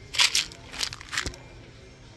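Small white decorative stones shifting and grating inside a plastic jar as it is picked up off a shelf, in a few short gritty bursts that are loudest near the start.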